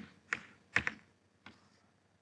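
Chalk tapping against a blackboard while writing: three or four short, sharp taps about half a second apart.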